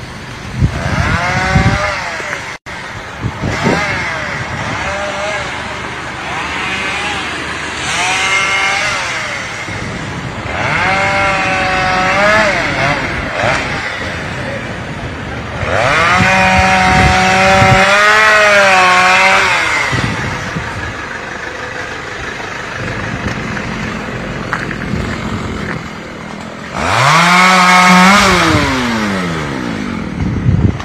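Chainsaw revving up and down in repeated bursts of one to four seconds, the longest held at full speed about sixteen seconds in and the loudest near the end, as fallen trees blocking the road are cut up.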